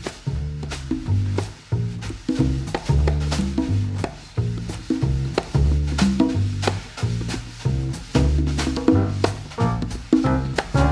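Live jazz quartet of piano, upright bass, drum kit and congas playing the opening of an up-tempo swing tune straight after the count-in. Heavy low notes repeat in a figure under steady, sharp drum strokes.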